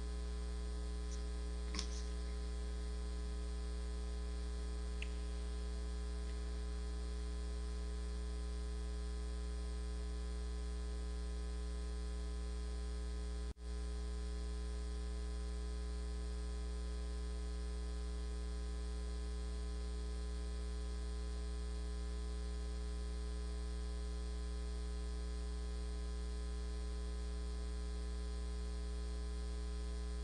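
Steady electrical mains hum, a low buzz with a ladder of higher overtones. It drops out for an instant about halfway through.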